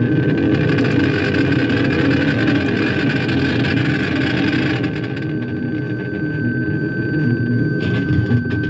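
A band rehearsing an improvised psychedelic piece: a thick noisy wash over low bass notes, with a steady high whistling tone running through. The wash thins out about five seconds in.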